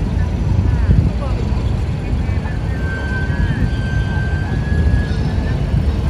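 Steady low outdoor rumble with faint distant voices.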